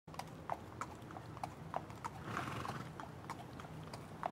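A horse's hooves clip-clopping at an even walking pace, about three strikes a second, heard faintly.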